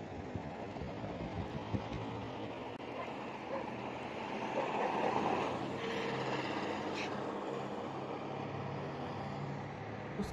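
Steady outdoor traffic noise with a low hum, swelling for a couple of seconds around the middle as a vehicle passes.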